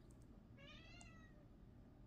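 A single faint call with a rising-then-falling pitch, lasting about two-thirds of a second near the middle, against near silence.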